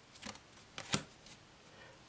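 Tarot cards being turned over by hand: a few light card flicks and snaps, the sharpest about a second in.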